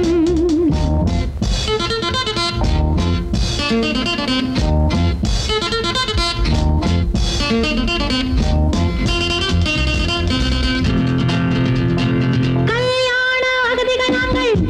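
Instrumental passage of a Tamil film song: electric guitar riffs and bass over a drum kit keeping a steady beat. Near the end a long held note with a wavering pitch comes in over the band.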